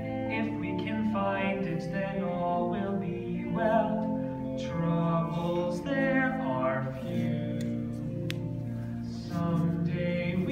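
Live musical-theatre singing with a pit orchestra accompanying.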